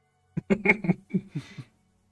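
A man chuckling: a run of short bursts of laughter that trails off.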